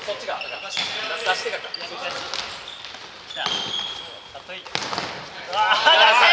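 Futsal played on a wooden gym floor: the ball kicked and bouncing in a few sharp knocks, sneakers squeaking, and players' voices calling out, loudest near the end.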